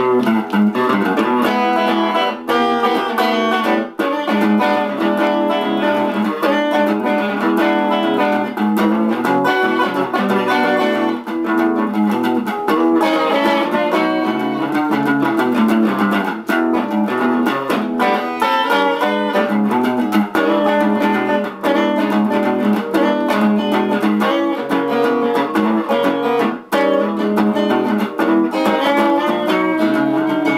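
Solo electric guitar, a Squier Stratocaster, played fingerstyle in a boogie-woogie: a busy bass line and melody played together.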